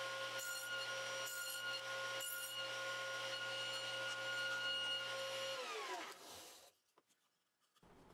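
Table saw running while a board is pushed through it on a crosscut sled, taking repeated passes to clear out a cross-halving notch. About five and a half seconds in, the saw is switched off and its pitch falls as the blade spins down.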